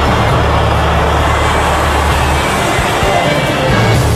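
Steady aircraft engine rumble from a plane's cockpit, laid under dramatic background music.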